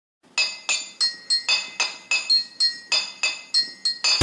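A quick run of about a dozen bright, high clinks, roughly three or four a second, each ringing briefly and dying away, with the pitch changing from one strike to the next like a little chime melody.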